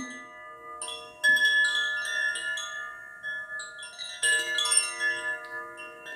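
Heart chakra chime, a single green metal tube chime, struck by its hanging clapper several times, its bright tones ringing on and overlapping. The strongest strikes come just over a second in and again a little past four seconds.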